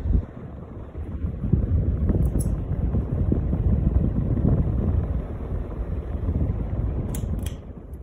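Casablanca Lady Delta ceiling fan running with its four blades spinning close to the microphone, the air they push buffeting it as a fluttering low rumble that eases near the end.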